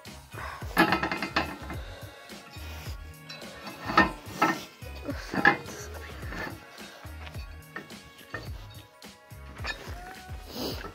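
Background music with a steady beat, over several sharp knocks and clanks from a metal ATV wheel rim and its tire being handled and worked as the old tire is pried off. The loudest knocks come about one, four and five and a half seconds in.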